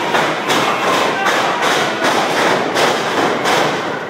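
Loud, evenly spaced thumps, close to three a second, over a dense wash of noise; the beat stops at the end.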